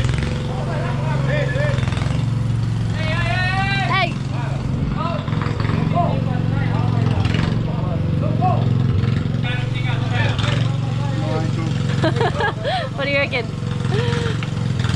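Tractor engine running steadily, under scattered voices of people talking.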